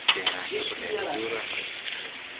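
Background chatter of several people talking, with two sharp clicks just after the start.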